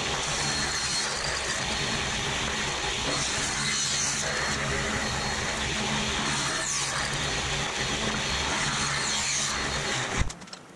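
Table saw running and ripping a thin strip off a wooden block fed along the fence: a steady, loud blade-and-motor noise with a low hum underneath.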